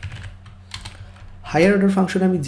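Typing on a computer keyboard: a few separate keystrokes, then a voice starts speaking about one and a half seconds in.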